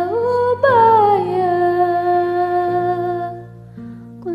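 A woman's voice singing a drawn-out, wordless phrase over a karaoke backing track: it slides up, then falls onto a long held note, and fades near the end.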